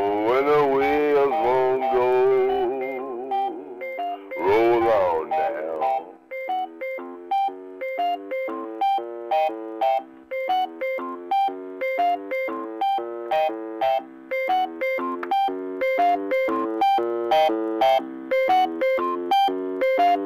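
Casio electronic organ playing out the tune with no singing. For the first few seconds it holds notes that waver and slide in pitch; from about six seconds in, it settles into a steady repeating pattern of short chords, about two a second.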